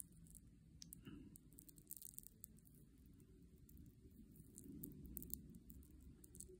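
Near silence: faint room tone with a few scattered faint clicks.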